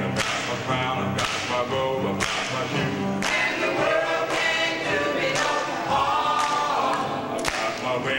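Gospel choir singing a cappella in several voices, with sharp hand claps about once a second keeping the beat.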